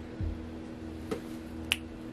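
Hands handling a small stone and paper notes on a cloth-covered table: a soft thump early, then two light clicks, the second one sharp, over a steady low hum.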